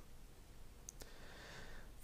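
Near silence with room tone, broken by two faint clicks close together about a second in, followed by a soft hiss.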